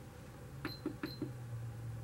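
A few faint clicks of buttons being pressed on a computerized sewing machine, two of them with a short high beep, as the stitch length is set shorter.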